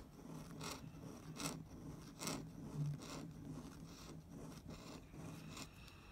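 Metal finger-shaped dip pen nib scratching across paper as it writes a row of looped strokes: a short, faint rasp with each stroke, about once a second.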